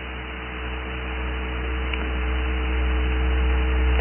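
Electrical mains hum with hiss on the recording, the low hum growing steadily louder through the pause, with a few faint steady higher tones over it.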